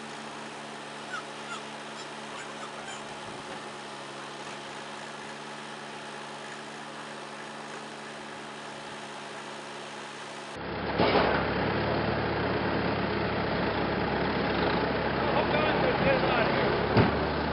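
Skid-steer loader engine running steadily, with a few faint clicks. About two-thirds of the way through, the sound cuts to a louder, closer recording of the engine running, with a couple of sharp knocks.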